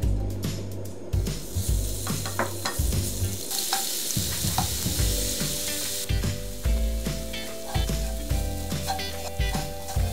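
Minced garlic sizzling in hot cooking oil in a frying pan while a wooden spoon stirs and scrapes it, with the sizzle loudest a little past the middle. Stir-frying over medium-low heat to flavour the oil before chili powder is added.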